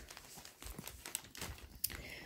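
Faint rustling and crinkling with scattered light clicks as a vegan-leather mini backpack is handled and shifted in the hand.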